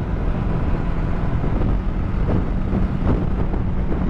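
Bajaj Dominar 400 single-cylinder engine running steadily while the motorcycle cruises on a highway, with wind rushing over the microphone.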